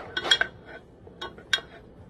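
A spoon stirring in a bowl, clinking against its side a few times with short, light ringing clinks.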